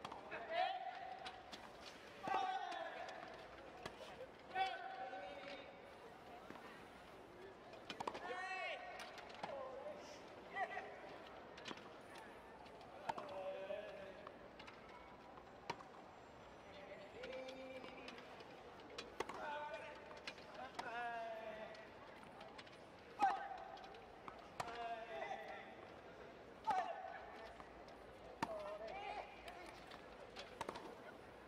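A wheelchair tennis doubles rally on a hard court: sharp racket strikes and ball bounces every second or two, each shot followed by a short vocal grunt or shout from the players.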